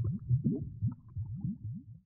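Cartoon bubbling sound effect: a quick run of short, low, rising bloops, about four or five a second, with small pops above them, dropping away at the very end.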